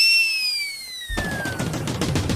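A comic sound effect: a high whistle that starts suddenly and glides slowly downward in pitch, like a falling firework whistle. About a second in, it gives way to a loud, dense noisy rush that runs on under music.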